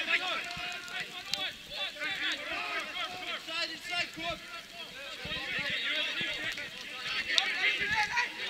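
Football players shouting to one another during play, several voices overlapping and calling at once, with a couple of short sharp knocks, one about a second and a half in and a louder one near the end.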